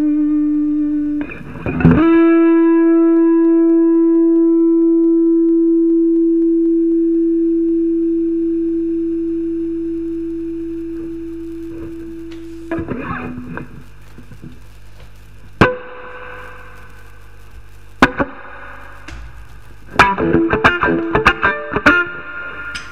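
Electric blues lead on a 1962 Fender Stratocaster through an overdrive pedal and a 1974 Fender Pro Reverb amp: a quick flurry of notes about two seconds in, then one long sustained note that slowly fades for about ten seconds. Sparse single picked notes follow, and a fast run of notes comes near the end.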